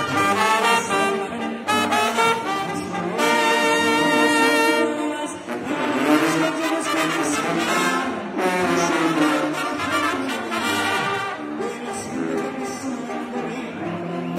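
Mexican banda brass band playing: trumpets and trombones holding chords in phrases, with short breaks between phrases, over drums.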